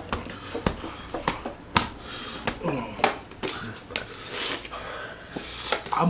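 People breathing hard through the mouth, with hissing breaths and a short falling groan about halfway through, as they suffer the burn of extremely hot pepper-coated nuts. Sharp clicks are scattered throughout.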